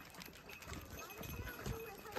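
Quiet, uneven footfalls on an asphalt road, with a faint voice now and then.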